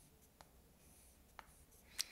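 Faint chalk writing on a blackboard: light high-pitched scratching, with two short ticks of the chalk striking the board about a second apart.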